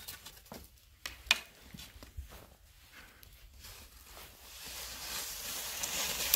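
Skis and poles on crusted snow: a few scattered soft crunches and scrapes, with a faint hiss building near the end.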